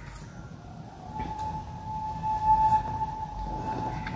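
A faint, steady single-pitched tone starting about a second in and held to the end, loudest midway, over a low background rumble.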